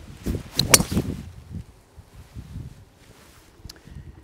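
A golf driver striking the ball from a tee: a sharp crack about three quarters of a second in, amid the swish of the swing, followed by wind rumbling on the microphone.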